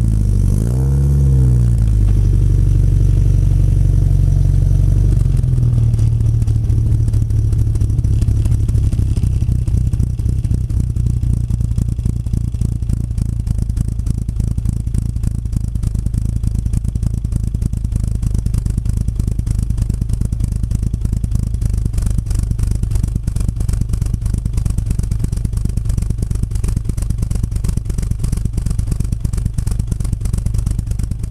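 The 1959 Triumph TR3A's four-cylinder engine, heard from the open cockpit. Its revs rise and fall a few times in the first two seconds as the car slows, then it settles to a steady, even idle with the car stopped.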